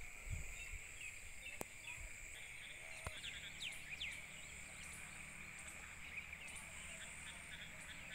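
A faint, steady chorus of insects in the open countryside, with a few short bird chirps and quick falling calls around three to four seconds in. A couple of sharp clicks and a low rumble near the start come from handling of the phone.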